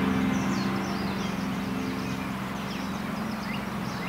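Soft relaxation soundscape: a steady low drone under repeated short bird chirps, as the ring of a bell or singing bowl dies away.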